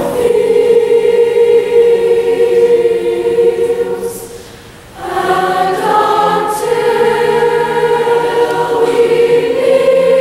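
A large combined high school choir of mixed voices singing long held chords; the sound fades away about four seconds in and the choir comes back in together a second later.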